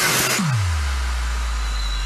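Electronic dance music at a breakdown: a white-noise riser cuts off about half a second in, and a deep sub-bass boom drops in pitch and then holds, slowly fading.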